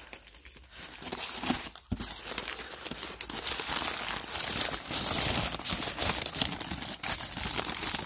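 Brown kraft packing paper crinkling and rustling as hands dig through it and unwrap it, busier and louder from about two seconds in.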